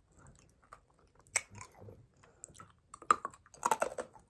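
Faint, irregular small clicks and crackles of fingers working at an earlobe during a self-piercing, with one sharper click about a third of the way through and a quick cluster near the end.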